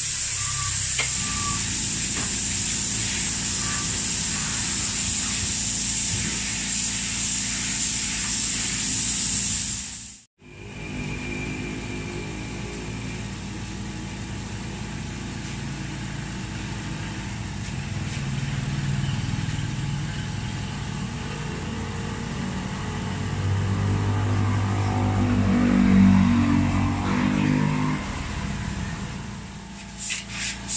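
Gravity-feed spray gun hissing steadily as it sprays basecoat for about ten seconds, then cutting off abruptly. After that a low motor drone swells, loudest shortly before the end.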